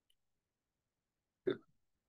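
Near silence, broken about one and a half seconds in by a single short vocal sound from a man, a brief catch of the voice rather than a spoken word.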